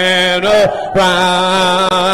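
Congregation singing a hymn a cappella in long, held notes, with a short break in the singing a little before halfway through.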